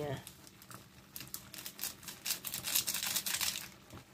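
An instant-noodle seasoning sachet crinkling over and over as it is squeezed and shaken empty into the pot, from about a second in until near the end.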